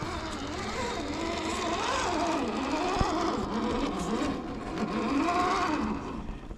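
Electric motor and geared drivetrain of an Axial SCX10 III 1:10 scale RC rock crawler whining, the pitch rising and falling with the throttle as it crawls up a rocky slope. A single sharp click about halfway through.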